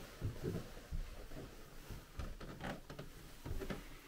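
Faint, irregular low knocks and shuffles of a person moving about a small room on foot.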